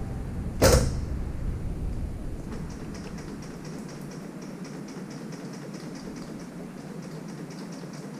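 A sharp metallic clank from work on a motorcycle's rear wheel and axle, followed by a light, fast ticking, about six ticks a second, that runs on steadily.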